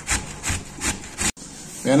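Cabbage being shredded on a metal box grater: four rhythmic rasping strokes, nearly three a second, that cut off suddenly about a second and a half in.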